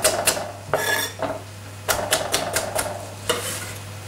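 Chef's knife chopping carrot on a wooden chopping board: a quick run of sharp knocks at the start, then a few scattered knocks later, over a steady low hum.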